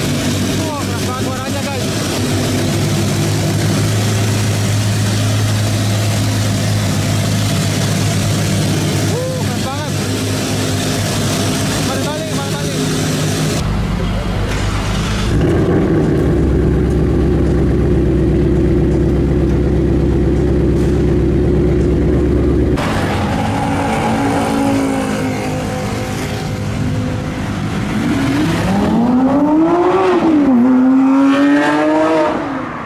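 Car engines idling with a steady rumble across several clips, including a Ford Mustang Mach 1's V8 about halfway through. Near the end an engine revs, its pitch rising.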